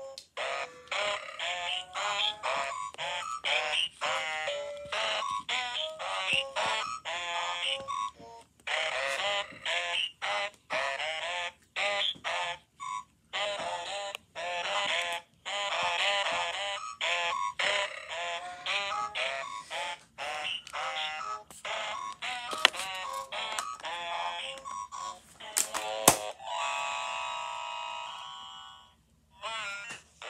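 Battery-powered children's musical toy playing its sung electronic tune through a small speaker, with scattered clicks; near the end it holds one steady chord for a couple of seconds, then cuts out. The sound is awful because of failing batteries.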